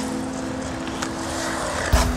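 Skateboard wheels rolling on a concrete bowl, a steady rumble, with a loud thud near the end.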